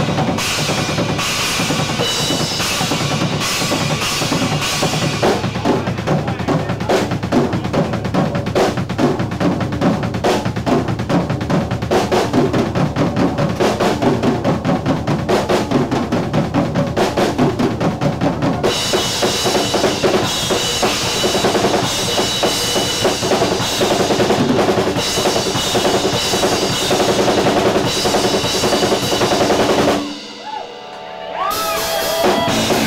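Live rock band playing an instrumental passage, led by a loud drum kit with bass drum and snare. About five seconds in the cymbals drop away for a stretch of fast, even drumming, and the full band with cymbals comes back in at about 19 seconds.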